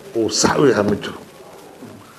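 A man speaking briefly for about a second, then a pause with only low room tone.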